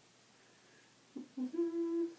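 A woman humming briefly: two short low notes, then a higher note held for about half a second near the end.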